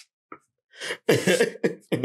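A burst of laughter, several short breathy pulses in quick succession, starting a little under a second in after a brief silence.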